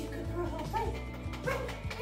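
A goldendoodle gives several short, high yips and barks, over background music with a steady beat.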